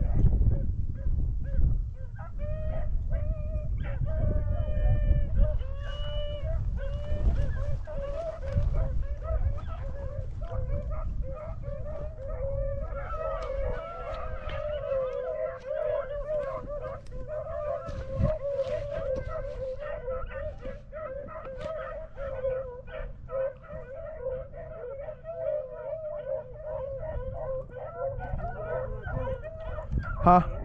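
A pack of beagles baying as they run a rabbit, several dogs' voices overlapping in a continuous chorus that grows fuller about halfway through.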